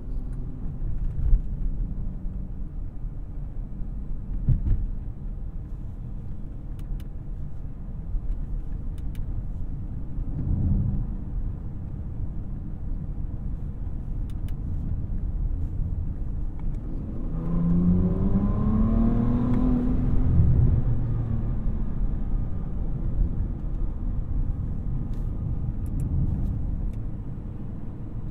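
Twin-turbocharged 6.0-litre W12 of a 2023 Bentley Flying Spur Speed at cruise: a steady low drone of engine and road. A couple of short thumps come in the first few seconds. About two-thirds of the way through, the engine note rises as the car accelerates, then settles back.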